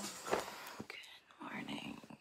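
A woman whispering close to the microphone, after a short knock about a third of a second in.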